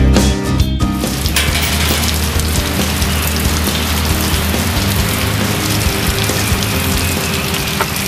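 Rock background music cuts off about a second in, giving way to a steady, even hiss of rain, with a low hum underneath.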